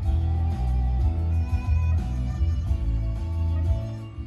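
Music with guitar and a strong bass line playing through the car's stereo speakers. It starts suddenly and stops near the end.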